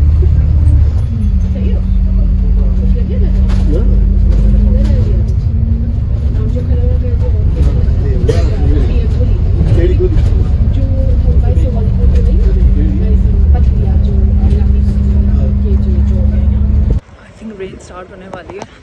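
City double-decker bus heard from inside on the upper deck: a loud low engine rumble with a steady hum that shifts slightly in pitch as it drives. The rumble cuts off abruptly about a second before the end.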